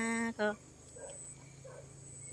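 A woman's voice singing Hmong lug txaj (kwv txhiaj) sung poetry: a held, steady-pitched phrase ends with a short closing note about half a second in. A quiet pause follows, with two faint soft sounds in it.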